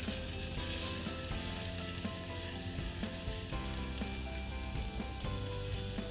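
Ginger paste sizzling steadily in hot oil in an aluminium pressure cooker as it is stirred with a wooden spatula, with soft background music underneath.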